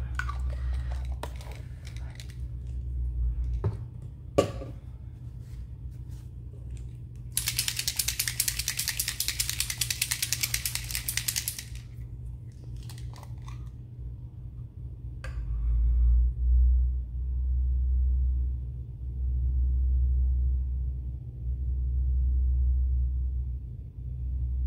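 A small bottle of metallic paint being shaken, rapid even rattling clicks for about four seconds near the middle, with a few knocks of bottles and brushes set down on the table.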